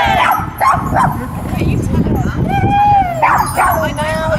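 A small dog yelping and whining repeatedly in short, high-pitched calls, with one longer arching whine about halfway through.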